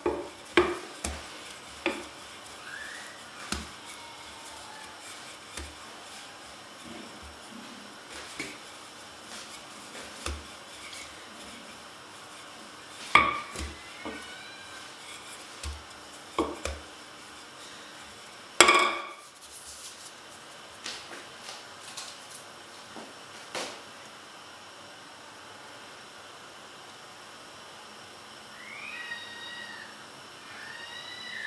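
Hands working a round of bread dough on a work surface: scattered soft taps and knocks, with two louder knocks that ring briefly, about 13 and 19 seconds in. Faint high chirping glides come in near the end.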